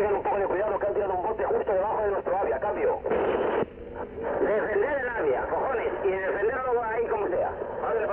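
Recorded police two-way radio traffic: a man's voice over a narrow, hissy radio channel, broken about three seconds in by a burst of static and a short pause. The messages report that a canister has been thrown right below the unit's area and order it to hold the position, each signed off with 'cambio'.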